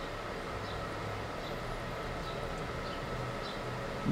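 Steady low background hum with a faint high steady tone and a few faint light ticks.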